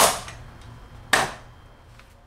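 Metal-legged stool being moved and set down: two sharp knocks, one at the start and one about a second in, each ringing briefly.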